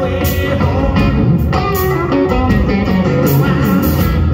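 Live blues-rock band playing an instrumental passage between sung lines: an electric guitar plays a lead line over bass and drums.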